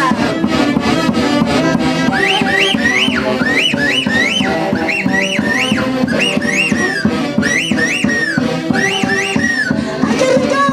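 Live Andean folk dance band playing, with saxophones, trumpets, violin, harp and drum kit over a steady beat. From about two seconds in, a high line of quick swooping notes, each rising and falling, repeats over the band.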